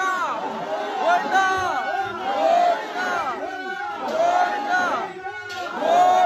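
A crowd of men shouting and calling out together, many voices overlapping in rising-and-falling cries.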